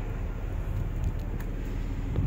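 Ford Edge engine idling, heard as a steady low rumble.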